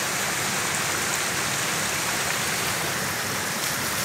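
Floodwater rushing steadily through a culvert and down a flooded channel, an even, unbroken rush of water.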